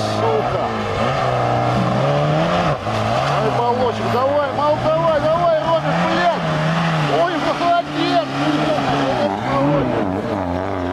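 Lada Niva's engine revving hard through deep mud, its pitch climbing and dropping several times as the driver works the throttle with the wheels churning.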